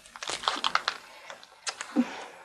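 Light clicks and taps in quick succession, a cluster in the first second and two more near the end.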